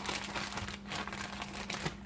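Plastic zip-top bag crinkling and crackling irregularly as it is squeezed and kneaded by hand, with raw shrimp, minced garlic and salt being worked together inside it.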